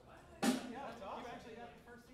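A single sharp drum hit about half a second in, ringing out briefly, over the chatter of a crowd.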